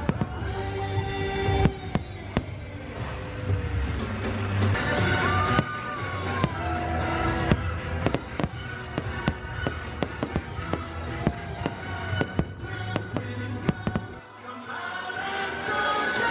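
Aerial fireworks bursting in a quick string of sharp bangs and crackles over continuous show music. The bangs thin out briefly about two seconds before the end.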